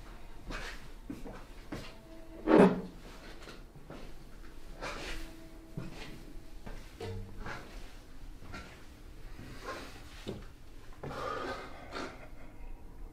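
A loud thump about two and a half seconds in, among softer knocks and rustling as someone moves about a small room.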